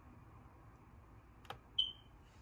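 A single sharp click about one and a half seconds in, then a short, high-pitched electronic beep near the end, the loudest sound here, over faint room hiss.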